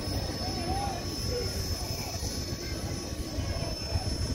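Wind rumbling on the microphone, with distant voices of people calling and talking.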